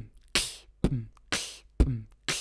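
Beatboxed drum beat: mouth-made kick drum and snare sounds alternating evenly, about one every half second, in a simple kick-snare pattern.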